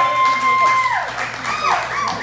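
Small audience clapping and cheering, with drawn-out whoops that hold one pitch and then fall away, right after the end of a live song.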